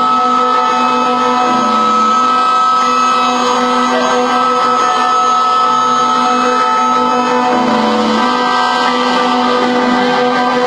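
Live experimental electronic noise music: a loud, dense, unbroken drone of several held tones over a hiss. A low tone dips in pitch twice, about two seconds in and again near the eight-second mark.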